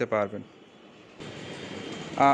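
A man's voice trails off, then a short lull. A little over a second in, a steady rushing background noise starts.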